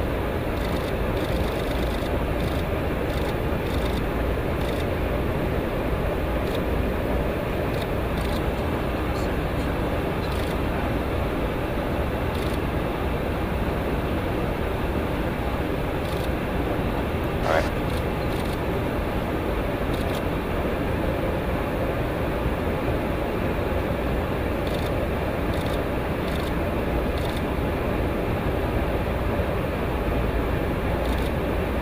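Steady in-flight noise of a refueling tanker heard from the boom operator's station, an unbroken rush of airflow and engine noise. A single brief rising chirp comes a little past halfway.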